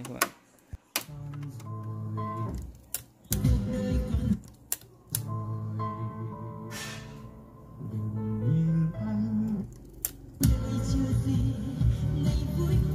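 Music playing back from a cassette on the Sony CFS-715S tape deck, its notes changing step by step. A couple of sharp clicks from the deck's piano-key buttons come near the start.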